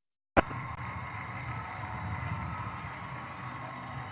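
Dead silence for a moment, then a sharp click and steady background noise with a faint low hum, the sound of a cut or gate in the recording opening onto the venue's ambience.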